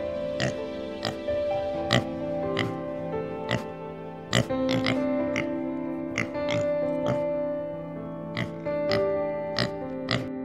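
Instrumental background music with steady held tones, with wild boar grunting over it in short, sharp grunts about once or twice a second.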